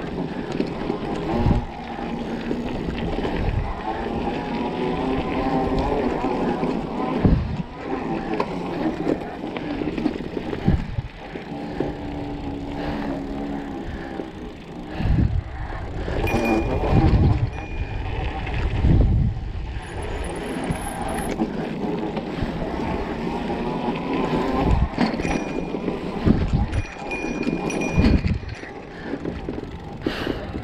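Mountain bike ridden over a dirt trail: a steady rumble of tyres on dirt, with frequent sharp knocks and rattles as the bike goes over bumps.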